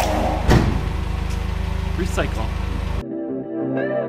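Background music with a loud thump about half a second in, a cardboard box of empty plastic jugs landing on a concrete floor. After about three seconds the music carries on alone.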